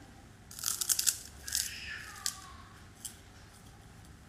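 Crunching bites into the crisp, shredded batter coating of fried chicken: a quick run of loud crunches about half a second in, a second run just before the two-second mark, then a couple of single crunches as the chewing goes on.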